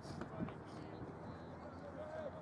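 Indistinct shouts and calls from players and onlookers across an open playing field, with no clear words, over steady outdoor noise.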